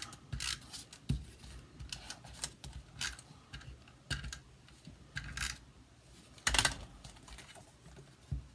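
Paper and cardstock being handled and pressed down by hand on a stamping platform: scattered light rustles and clicks, with a louder rustle about six and a half seconds in.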